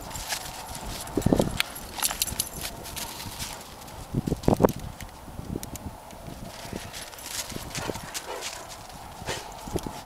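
Parts of a Sidestix crutch's snow basket and tip being fitted by hand onto the crutch shaft: scattered clicks and small knocks, with two louder knocks about a second in and again near the middle.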